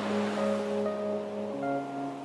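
Slow piano chords, held notes changing to a new chord about three-quarters of the way through, over a soft steady noisy wash.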